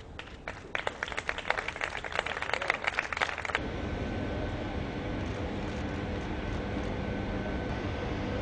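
A small group claps for about three seconds, the claps growing louder. It stops abruptly and gives way to a steady hum with a few faint steady tones from the surrounding refinery plant.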